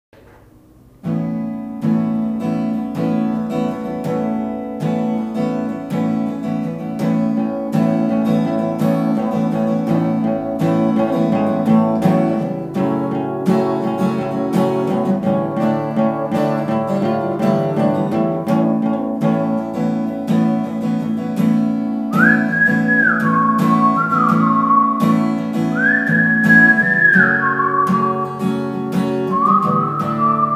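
Instrumental intro of a song on acoustic guitar, starting about a second in. Near the end a whistled melody joins in, with long held notes that slide between pitches.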